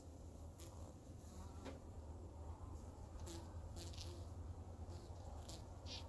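Faint low hum of honeybees crowded on a brood frame, with a few soft clicks scattered through.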